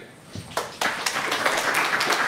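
Audience applause: a few scattered claps about half a second in, quickly filling out into steady clapping from the whole room.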